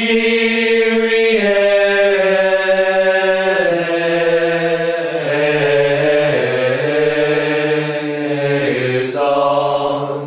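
Unaccompanied voices singing a slow chant in long held notes, the pitch stepping down in the middle; a new phrase starts near the end.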